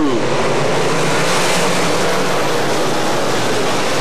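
A pack of dirt-track Sportsman stock cars racing by, their engines blending into one loud, steady roar of motor and track noise.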